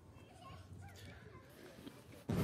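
Faint, distant cries: several short calls that rise and fall in pitch, over a near-quiet background.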